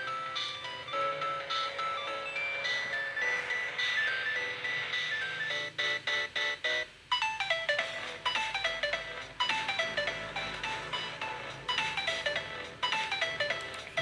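Background music: a light electronic tune of short, high, chime-like notes, with quick runs of falling notes in the second half.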